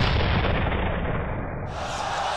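Cinematic boom sound effect dying away in a long low tail, its highs stripped away in steps so it grows steadily more muffled. Near the end it cuts to the noise of a basketball arena.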